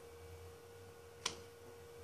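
Quiet room tone with a faint steady hum. A single short click comes just past a second in.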